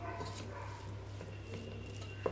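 Wooden spatula stirring cooked rice in a pot, a faint soft rustle. Over it there is a thin, high, whining sound made of a few steady tones, and a low steady hum underneath.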